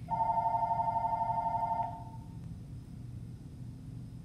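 Telephone ringing: a single ring of about two seconds, a rapidly pulsing tone that stops abruptly, signalling an incoming call.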